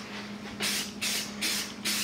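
Aerosol can of spray primer hissing in short repeated bursts, starting about half a second in, over a faint steady low hum.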